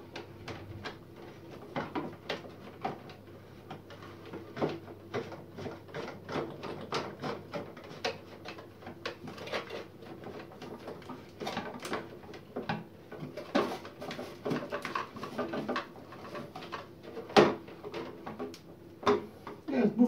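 Irregular plastic clicks, taps and knocks of a reverse osmosis filter housing and cartridge being handled as a new sediment filter is fitted and seated in place, with one sharper, louder knock near the end.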